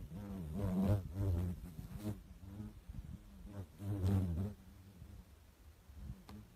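A low, steady buzzing drone whose pitch wavers. It swells louder twice, about a second in and again about four seconds in.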